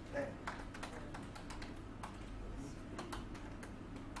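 Irregular clicking of laptop keyboards as people type, a quick patter of key taps with brief gaps.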